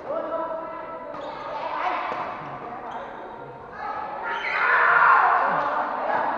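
Voices calling and shouting, echoing in a large sports hall, louder from about four and a half seconds in, with a few sharp impacts from badminton play.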